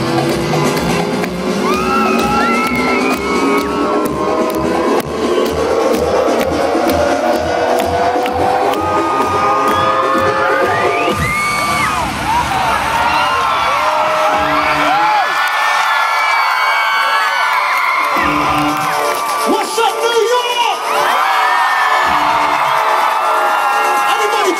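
Live concert intro music played loud over a PA, with a steady beat under a rising sweep that builds for about eleven seconds. Then the beat drops away and a large crowd screams and cheers over sparser music.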